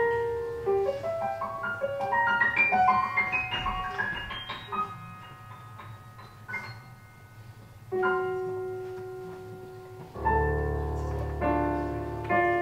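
Solo piano played live: a run of notes climbing higher over the first few seconds, then quieter playing, then a held chord about eight seconds in and a fuller chord with deep bass notes near the end.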